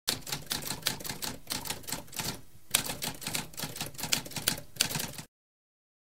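Typewriter typing: a quick run of keystroke clacks with a short pause about halfway through, stopping abruptly about five seconds in.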